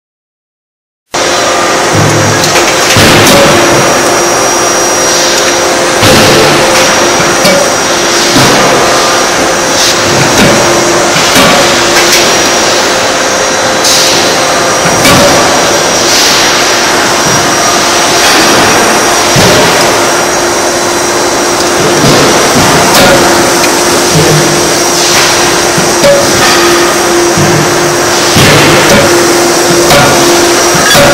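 A 31.5 kJ CNC hydraulic die forging hammer striking a red-hot workpiece in the die, a sharp blow every second or two, over a loud steady machine drone with a constant hum. The sound starts about a second in.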